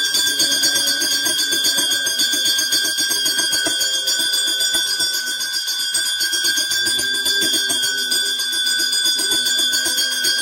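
A small hand bell rung continuously at the altar, a steady ringing that holds the same pitch throughout, over a low chanting voice.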